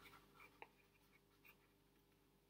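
Near silence, with a few faint taps and scratches of a stylus on a tablet screen, about half a second in and again around a second and a half.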